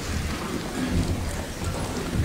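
Bustle of a group of people leaving a church platform: shuffling footsteps, clothing and paper rustling, heard as a steady noisy haze with a low rumble underneath.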